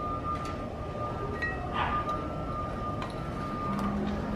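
Light metal clinks with brief ringing, a few times, from a long ratchet extension and socket working transmission bolts on the underside of a car. A steady high tone runs underneath.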